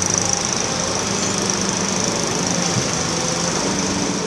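Diesel engine of a Caterpillar tracked excavator running steadily as it digs and loads: a low, even engine hum with a steady high hiss above it.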